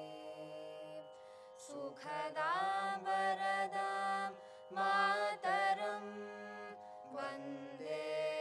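Carnatic-style invocation prayer sung by a group of vocalists, long held, gliding notes with short breaks between phrases, over a steady drone.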